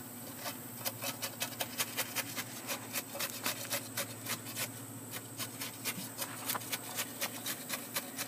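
A steel trowel jabbing and scraping wet concrete mix down into a cinder block's hollow cell, packing it in. It makes quick, irregular scrapes and taps, several a second.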